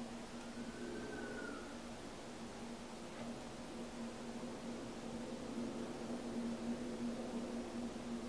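Quiet room tone: a steady low hum over faint hiss, with no clear event.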